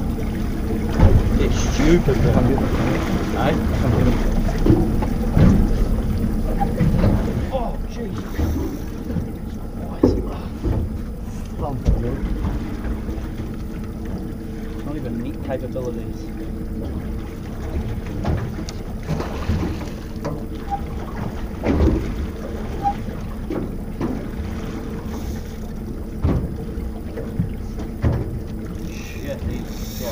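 A boat's outboard motor running at a steady drone, with scattered knocks and faint, unclear voices over it. The knocks and voices are busiest in the first several seconds.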